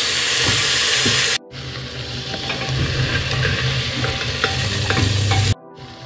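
Lamb trotters (mutton paya) sizzling as they fry in ghee with onions and spices in a pressure cooker, stirred with a wooden spatula that scrapes and knocks against the pot. The sizzle breaks off abruptly twice, about a second and a half in and near the end, and comes back quieter each time.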